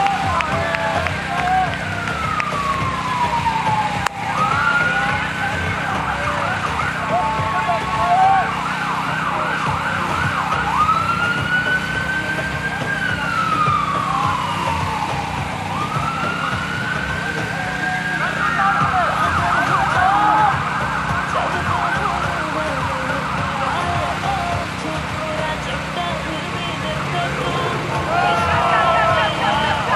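An emergency vehicle's siren wailing, its pitch slowly rising and falling over several seconds at a time, with faint voices underneath.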